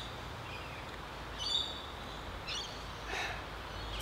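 Outdoor ambience with a steady low background noise and a few short, high bird calls, one about a second and a half in and another about a second later, then a brief soft rush of noise a little past three seconds.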